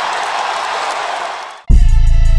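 Arena crowd noise from the basketball broadcast, fading out about a second and a half in. It is cut off by loud hip-hop music with a deep bass that starts suddenly near the end.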